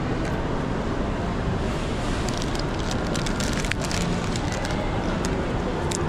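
Steady background noise of a busy indoor shopping mall, an even hiss with a few faint clicks a couple of seconds in.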